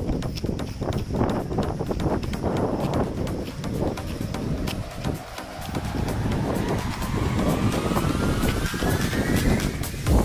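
Rumbling wind and handling noise on a handheld camera carried by a runner, with frequent small knocks. In the second half, a whine rises steadily in pitch, like something speeding up.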